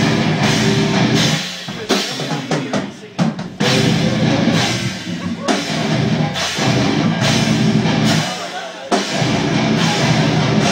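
Live deathcore band playing distorted guitars, bass and drums in stop-start riffs, loud blocks of sound broken by short gaps and separate stabs a few seconds in.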